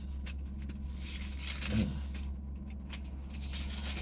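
Steady low hum inside a vehicle's cabin, with faint rustles and light clicks of Bible pages being turned.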